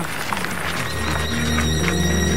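Film soundtrack: a busy patter of clip-clopping knocks with sustained background music swelling in about a second in.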